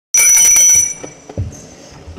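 A small hand bell rung rapidly: bright ringing tones that start abruptly and fade within about a second, followed by a few soft low knocks. The bell calls the council session to order.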